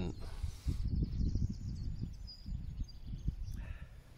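Outdoor ambience: an uneven low rumble of wind on the microphone, with a faint, quick bird trill in the first half.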